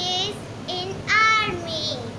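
A young girl's voice, speaking in short, high-pitched, sing-song phrases, the loudest about a second in.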